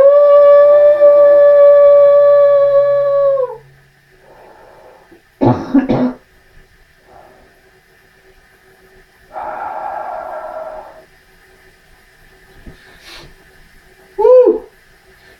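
A man's long, loud "ooh", sliding up in pitch and then held on one note for about three seconds before trailing off. A short cough follows about five and a half seconds in, and a breathy noise lasting about a second and a half comes near ten seconds.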